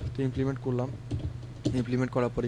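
Typing on a computer keyboard: a few keystrokes, heard most clearly in a pause around the middle, with a man's voice talking around them.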